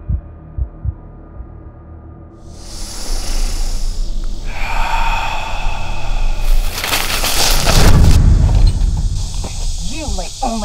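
Film fight-scene sound: a few low thuds over a dim drone, then a rising wash of noise with wordless shouts and grunts and scuffling on the ground, loudest in a burst late on.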